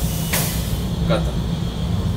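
Steady low rumble of a Shinkansen bullet train in motion, heard from inside its onboard toilet compartment, with a brief hiss about a third of a second in.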